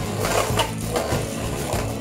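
Two Beyblade spinning tops, one of them a Big Bang Pegasis F:D, whirring and grinding against each other and the plastic stadium floor, a dense, really loud rattling scrape from their clashes.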